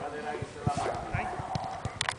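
Distant voices calling out across a football pitch, with irregular low thuds throughout.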